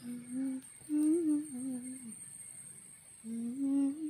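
A person humming a slow, wavering tune with closed lips, in three short phrases: one at the start, a longer one about a second in, and another near the end.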